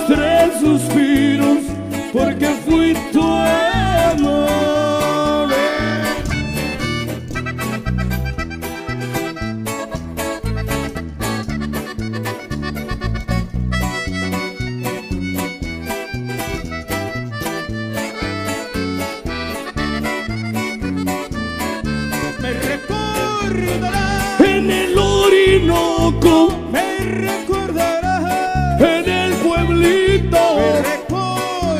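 Norteño band playing an instrumental break: accordion carrying the melody over a steady rhythm of bass and guitar.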